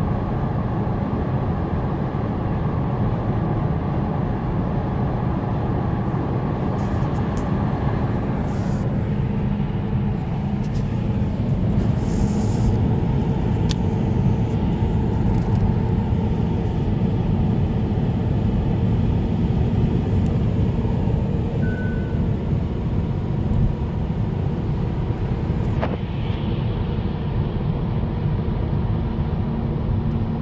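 Steady road noise inside a car's cabin at motorway speed, with tyres and wind giving an even, low rumble.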